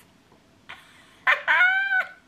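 A woman's high-pitched squeal, held and dipping slightly in pitch, about a second and a quarter in, after a short breath.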